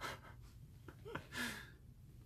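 A man's breathy exhales: a short sharp breath right at the start and a longer, fuller breath about a second and a half in, with a couple of small mouth clicks between.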